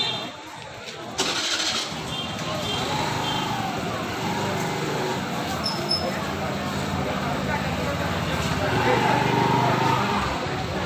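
People's voices in a waiting crowd, with a motor vehicle's engine running steadily underneath from about a second in.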